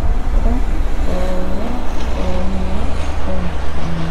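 Background music: a deep, steady bass with a slow melodic line gliding between held notes.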